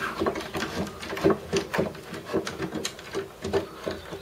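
Irregular light clicks and knocks, several a second, from a wooden garden trebuchet as its throwing arm and counterweight swing and settle just after a throw.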